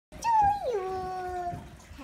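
A voice-like call: one high note that slides down about half a second in and is then held for about a second before fading.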